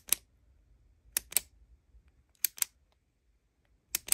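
Pink retractable ballpoint message pen being clicked: sharp double clicks (the button pressed and released) about every 1.3 seconds, each press turning the barrel to show a new printed message.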